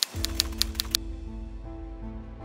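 Quick typing clicks, about six in the first second, then stopping, over background music.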